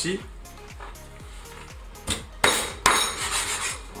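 Background music with a steady beat; about two seconds in, a large kitchen knife cuts through a raw chicken's leg joint against a wooden cutting board, a click followed by two loud, noisy cutting sounds.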